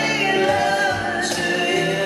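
Several male and female voices singing together in harmony in a live acoustic pop performance, holding long notes.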